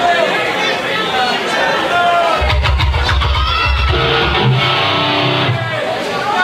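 Crowd voices and chatter, then about two and a half seconds in a short burst of electric guitar and bass from the stage: a heavy low rumble with a few held notes that stops just before the end.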